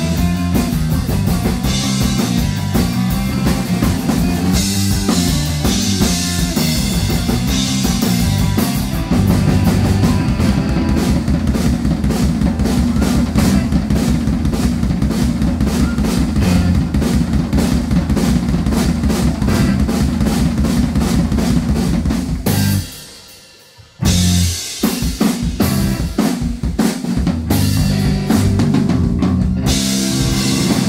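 Yamaha drum kit played as a live surf-rock drum solo: toms, snare and bass drum in a busy rhythmic pattern. About a third of the way in it moves into a long run of fast, even strokes. Near three quarters of the way through it stops dead for about a second, then comes back in loud.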